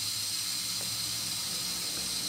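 Steady hiss of water running into a stainless-steel sink.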